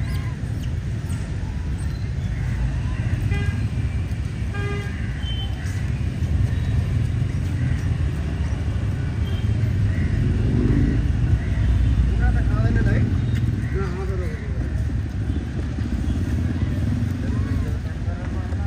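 Street ambience: a steady low rumble of passing traffic and motorbikes, with faint distant voices and a brief horn toot a few seconds in.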